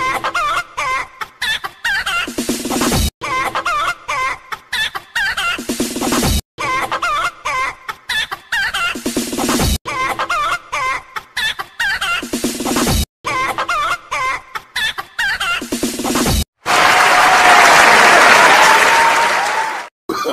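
Chicken clucking: the same clucking phrase repeats five times, about every three seconds, each ending in a lower drawn-out note and breaking off sharply. In the last three seconds a loud hissing noise takes over.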